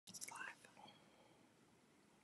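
Near silence, with a faint whisper in the first second.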